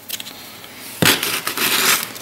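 Light clicks, then about a second of gritty crunching and scraping starting about a second in, from a Delft clay casting flask being handled as its wire locking strap is fitted around the metal frame.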